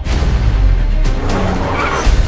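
Action-film sound effects of a heavy truck crash and skidding tyres layered over a music score: a sudden hit right at the start, then a dense, bass-heavy rumble.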